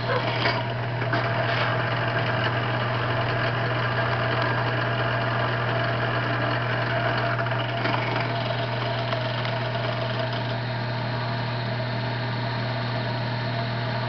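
Benchtop drill press motor running with a steady hum while its bit cuts down into soft aluminum: the block and pressed-in cold cylinder of a model Stirling engine.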